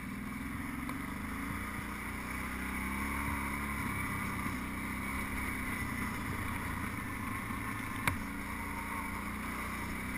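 ATV engine running at a steady speed while the machine rides a gravel trail, with one sharp knock about eight seconds in.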